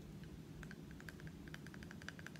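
A clear plastic pen tapped against teeth: a quick run of faint, light clicks, about a dozen in a second and a half.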